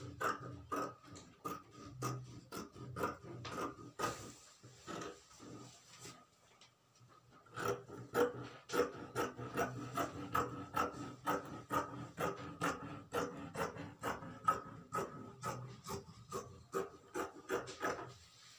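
Tailor's chalk scraping across fabric in short repeated strokes, about two a second, as the sleeve outline is marked out; the strokes pause for a few seconds partway through.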